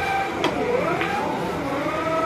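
Pool cue tip striking the cue ball, then a second sharp click about half a second later as the balls collide, over a wavering pitched sound running underneath.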